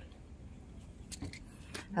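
Hanging bangle bracelets knocking together as a hand moves them, giving a few light clinks just over a second in.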